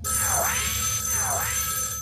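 Electronic phone-alert sound effect: a synthesized tone that swoops down and back up twice, about once a second, over steady high ringing tones.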